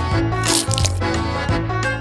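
Background music, with a crunchy bite into a hard-shelled candy about half a second in.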